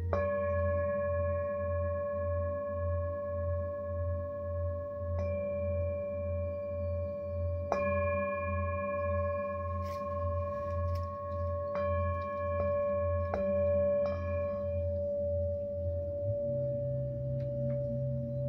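Tibetan singing bowl struck repeatedly with a padded mallet: a single strike at the start, two more spread through the middle, then four in quick succession, each renewing a long, steady ringing tone with higher overtones. Under it runs a low hum that wavers about twice a second and steps up in pitch near the end.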